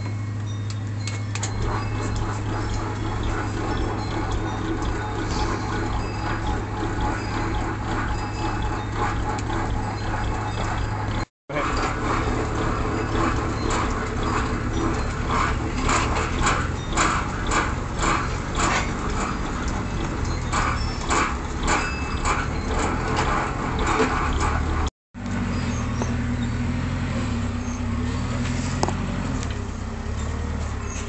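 Benchtop drill press running with a steady motor hum while its spiral auger bit bores into a pine board, the cutting giving a dense, uneven scratching. The sound drops out twice for a split second.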